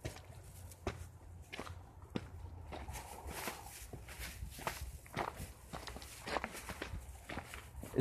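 Uneven footsteps on a rocky trail, about a dozen steps at an irregular pace, over a low steady rumble.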